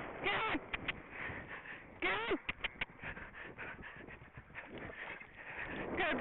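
Rider's voice giving two short calls with a falling pitch to a galloping horse, each followed by quick tongue clicks urging it on. Steady wind rush runs under them.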